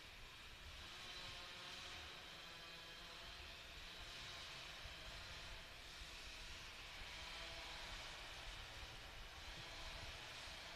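Distant chainsaw running, heard faintly as a thin engine drone whose pitch wavers, over a low rumble.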